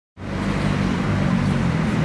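Street traffic noise with motor vehicles running, fading in just after the start and then holding steady with a low hum of engines.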